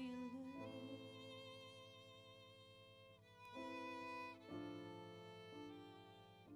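Live violin playing long, held notes over sustained band accompaniment in a quiet instrumental passage, with the chord changing a few times.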